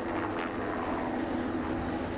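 Helicopter flying off low and away, a steady engine and rotor sound.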